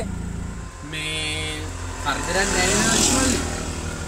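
Auto-rickshaw engine running steadily inside the cabin while driving. A short held tone sounds about a second in, and a voice follows around the middle.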